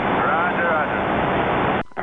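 CB radio receiver hissing with loud band static as the distant station replies, a faint voice buried in the noise: a weak long-distance signal close to the noise floor. The static starts abruptly and cuts off just before the end.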